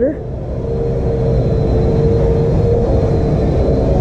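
Vacuum cleaner running with a steady, unchanging hum, over a low rumble.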